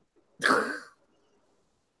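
A man coughing once into his fist: a single short cough about half a second long.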